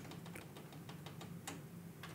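Faint, scattered clicks of the Akai MPC2000XL's soft keys being pressed and its data wheel being turned while a sample start point is fine-tuned, over a faint low hum.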